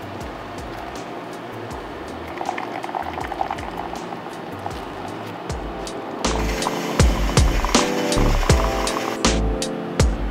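Hot water pouring in a steady stream from a BUNN brewer's hot-water faucet into a paper cup, under background music. About six seconds in, the music comes up louder with a heavy bass beat.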